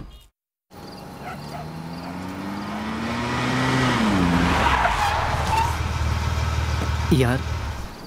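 SUV engines pulling in with a rising pitch that drops about four seconds in, as tyres skid to a stop on dirt. A man's voice comes near the end.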